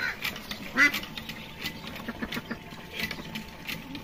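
Newly hatched ducklings peeping in short, rapid high-pitched notes, with one louder short duck call about a second in.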